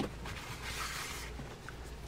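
Faint rubbing and handling noise from a baitcasting reel being worked in gloved hands, with a soft hiss swelling in the middle.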